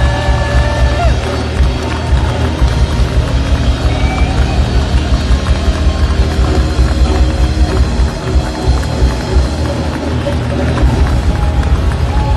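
Live rock band playing loudly, heard from within the audience: bass guitar and a steady pulsing drum beat fill the sound, with held guitar or vocal notes early on.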